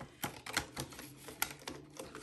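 Light clicks and rustles of hands handling a plastic cash binder, its clear envelope pages and polymer banknotes: an irregular string of sharp little clicks.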